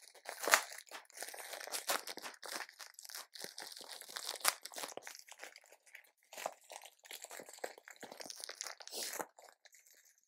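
Plastic packaging crinkling and rustling as it is handled: irregular crackles throughout, with a few louder crunches.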